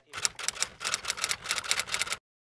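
Typewriter sound effect: a rapid, even run of key clicks, about ten a second.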